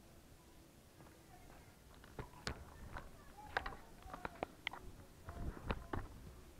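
Faint footsteps and handling knocks: irregular light clicks and taps starting about two seconds in.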